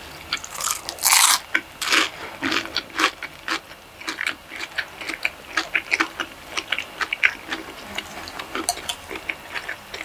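Close-miked chewing and biting of Panda Express food: wet mouth clicks and smacks throughout, with louder crunches about one and two seconds in.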